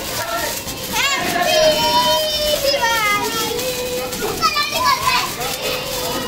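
Children's high-pitched shouts and drawn-out cries, several voices overlapping.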